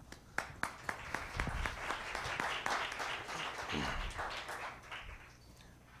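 Audience applauding: a few scattered claps swell into steady applause that dies away about five seconds in.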